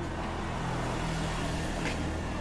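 A motor vehicle engine running with a steady low hum, over general street noise.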